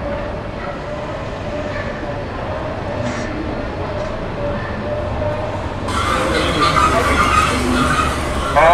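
Steady rumble of a moving vehicle with a faint steady hum. About six seconds in it cuts abruptly to a brighter, louder sound with voices.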